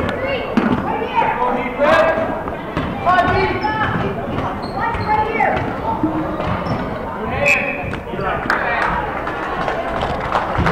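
Basketball bouncing on a hardwood gym floor during play, under the steady chatter and shouts of spectators and players in the gymnasium.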